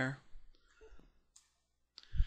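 A few faint clicks of a computer mouse, with a sharp one about a second and a half in and another at the end, while text is dragged within a script editor.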